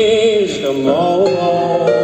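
Live blues band of piano, upright bass and drums: a sung note held with vibrato that falls away about half a second in, followed by sustained piano chords over the rhythm section.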